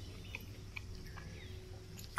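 Quiet eating sounds: a few faint, light clicks as a fork picks into fried fish on a wooden board.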